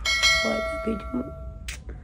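A bell-chime sound effect, struck once, ringing with several steady tones for about a second and a half and then cutting off suddenly: the notification-bell sound of an on-screen subscribe-button animation.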